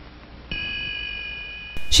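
A bell-like ringing tone of several steady pitches sounds suddenly about half a second in and fades slowly, cut off just before speech resumes.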